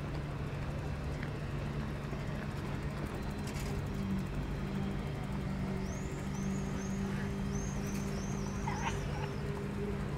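Outdoor waterfront ambience with a steady low engine hum under it. From about six to nine and a half seconds in comes a run of about eight short, high chirping calls.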